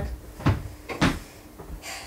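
Plastic punched-pocket pages in a ring binder being turned over by hand, with two short knocks about half a second apart.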